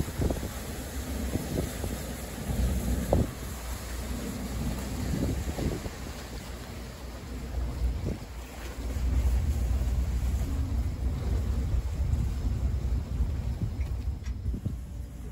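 Wind on the microphone over the low, steady rumble of the Garinko-go III icebreaker moving through drift ice, with a few short knocks and cracks of ice breaking and striking the hull, the sharpest about three seconds in.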